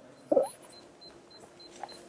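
A pause in a talk: a brief vocal sound about a third of a second in, then quiet room tone with a faint high pip repeating about four times a second.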